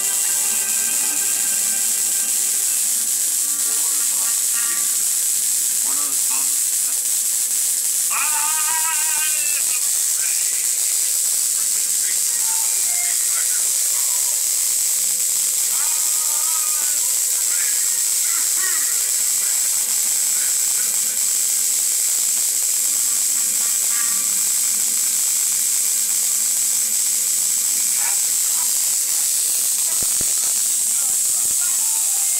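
Electric arcs from a roughly 15 kV flyback transformer running over a ribbed ceramic insulator, giving a steady high-pitched hiss that holds at an even level throughout.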